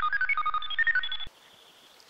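Electronic sound effect: a quick run of short computer-like beeps jumping between pitches, over a faint hum, which cuts off suddenly just over a second in. It is the robot wishing machine at work as it grants a wish.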